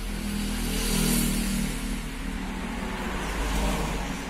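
A motor vehicle's engine running past, swelling to a peak about a second in and again near the end.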